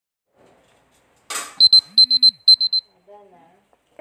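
Smartphone timer alarm going off: a short burst of noise, then a quick run of high-pitched electronic beeps in groups of two, three and three, lasting about a second.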